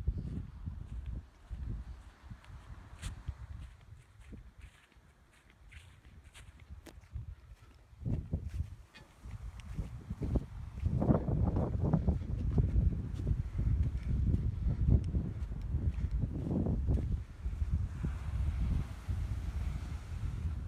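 Footsteps walking on soft sand with wind rumbling on the microphone, quieter at first and louder from about halfway through.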